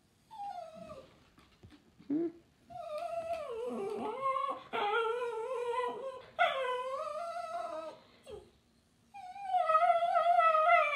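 A small terrier-type dog "talking" to its owner: a short falling whine, a brief yip about two seconds in, then long whining cries that waver up and down in pitch, each lasting a couple of seconds. After a short pause near the end another starts. This is his demanding vocalizing when he wants something.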